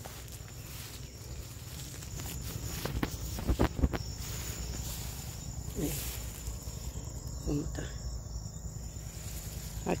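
Steady high-pitched insect drone in the orchard, with a few clicks and rustles of movement through the plants about three to four seconds in. A couple of brief faint voice sounds come later.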